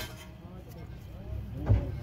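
A low, steady rumble with faint voices in the background. A short thump about three-quarters of the way through comes from the phone being handled close to the microphone.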